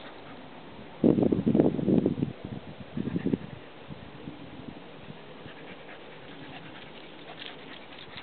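A small dog barking: a quick run of barks about a second in, then a shorter burst of barks about three seconds in.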